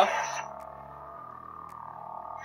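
Double-bladed sound-effect lightsaber powering down: its built-in speaker's sound drops away within the first half second, leaving a fainter steady hum as the blades go out.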